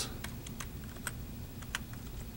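Slow typing on a computer keyboard: a few separate, irregularly spaced keystroke clicks.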